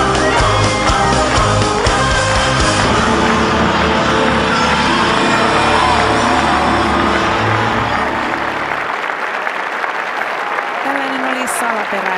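Performance music with a heavy low end ending about nine seconds in, as a large stadium crowd applauds and cheers. The applause carries on after the music stops.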